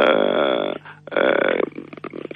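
A man's low, creaky voice making two drawn-out hesitation sounds ("eh"), the first longer, with a short pause between them.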